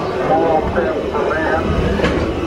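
Indistinct voices from a dark ride's animatronic scene soundtrack, over the steady low rumble of the moving ride vehicle.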